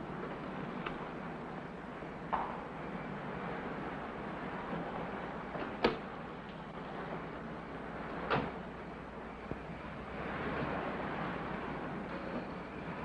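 Doors shutting, a car door among them: a few sharp clunks, the loudest about six seconds in and another just over eight seconds in, over a steady hiss.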